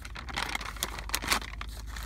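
White paper food wrapping crinkling and tearing in irregular bursts as it is pulled open by hand, over a low steady hum.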